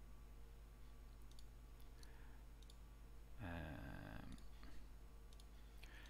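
Near silence with a few faint computer mouse clicks, and a brief, slightly louder low sound about three and a half seconds in.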